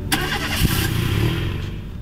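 Car engine revving as the car accelerates away. It comes in suddenly just after the start and fades over about a second and a half.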